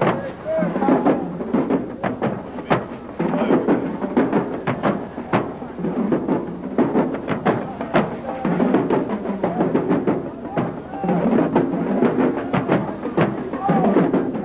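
Marching band drumline playing a cadence: rapid sharp drum strikes, several a second, over a jumble of voices.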